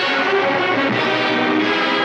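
Orchestral film background score with prominent brass, playing loud and steady.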